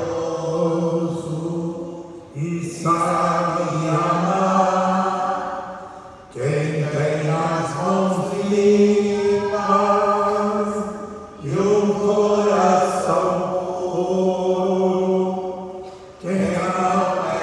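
A priest's male voice singing a slow liturgical chant into a microphone, holding long steady notes in phrases a few seconds long, with short breaths between them.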